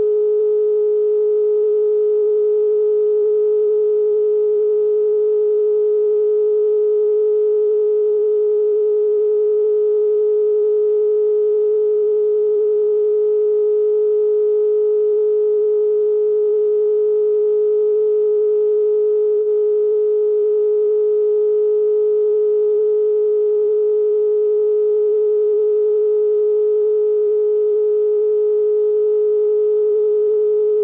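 Television broadcast test tone sent with colour bars while the station is off the air: one loud, steady, unbroken pitch with faint higher overtones.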